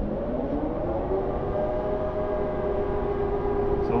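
Electric drive motors of a Fountaine Pajot Saba 50 catamaran whining as the throttle is pushed forward. The pitch rises over about the first second, then holds nearly steady, over a low rumble.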